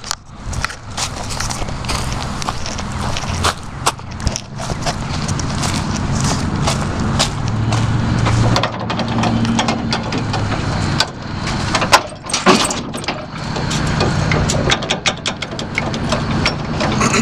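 Yazoo riding mower's Honda engine idling steadily, with scattered metal clanks and rattles from the trailer hitch and safety chain being handled, the loudest clank about twelve seconds in.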